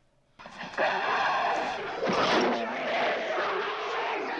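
Horror-film soundtrack of a werewolf attack: loud roaring and yelling that cut in suddenly after a moment of silence and carry on.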